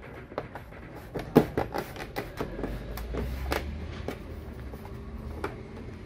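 Plastic back cover of a Lenovo ThinkCentre Edge 91z all-in-one PC being pressed and worked into place on the case: a series of irregular plastic clicks and knocks, the loudest about a second and a half in and again about three and a half seconds in.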